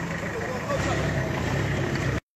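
A vehicle engine idling steadily, with faint voices in the background.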